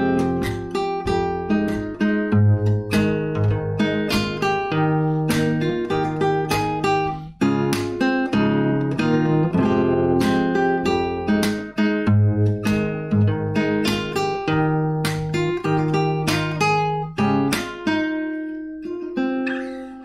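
Acoustic guitar played fingerstyle: a plucked melody over bass notes, cut through by sharp strummed accents on a steady beat. The playing thins out and trails off near the end.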